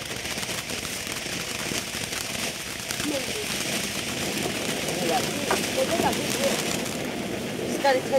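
Red Star ground fountain firework spraying sparks with a steady hiss.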